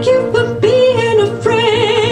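A woman singing through a microphone, moving between notes and then holding one long note with vibrato from about halfway in.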